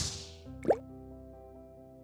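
Motion-graphics transition sound: a whoosh tails off, then a quick rising "bloop" pop about two-thirds of a second in, over a held music chord that slowly fades.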